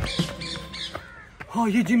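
A few short bird squawks, followed by a man's voice near the end.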